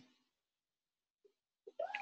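Near silence, broken by a short click at the very start and a faint voice sound just before the end.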